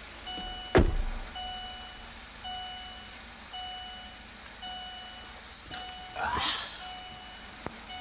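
Chevrolet sedan's warning chime beeping steadily, about one half-second tone each second, sounding because the driver's door stands open. A sharp thump about a second in and a brief clatter about three quarters of the way through.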